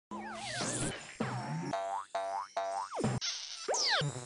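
Cartoon sound effects: a run of springy boings with wobbling, rising and falling pitch glides over light music, and a short hiss about three seconds in.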